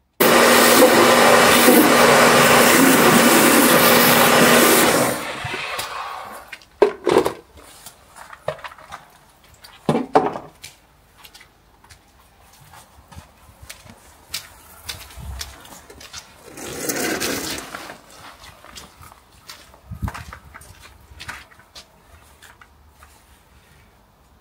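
Electric pressure washer running with a steady motor hum for about five seconds, then winding down and stopping. Scattered knocks and clicks follow, with a short burst of noise a bit past the middle.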